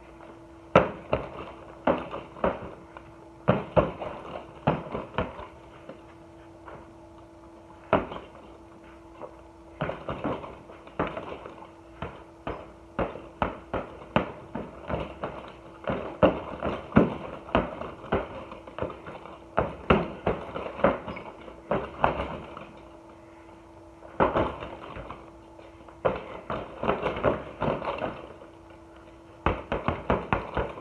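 Boxing gloves punching a hanging heavy bag: irregular flurries of thuds, several punches a second, broken by short pauses between combinations.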